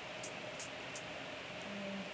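Small water spray bottle pumped in a run of short, quick hisses, misting water onto watercolour tissue paper so its dye bleeds out.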